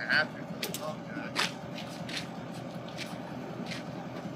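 Steady low outdoor hum, like distant vehicles, with a few short light clicks and taps scattered through it.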